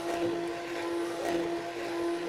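Handheld stainless-steel immersion blender running steadily in a pot of thick barbecue sauce, its motor giving a constant even-pitched whine as it purées the sauce smooth.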